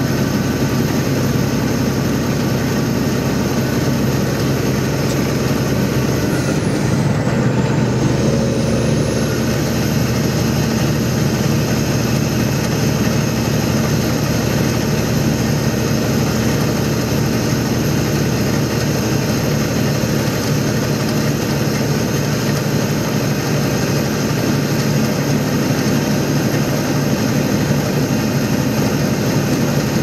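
Steady engine drone and road noise heard from inside a truck's cab while cruising on a highway; the engine note shifts slightly about seven seconds in.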